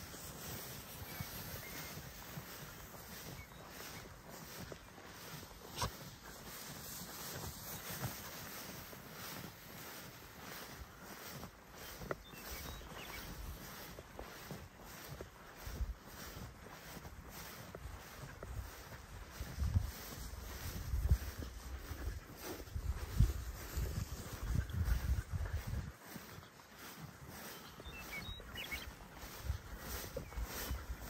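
Footsteps swishing through tall meadow grass at a steady walking pace. Low wind rumble on the microphone comes in gusts about two-thirds of the way through, the loudest part.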